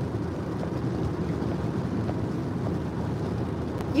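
Steady low rumble of road and engine noise inside a car's cabin while driving.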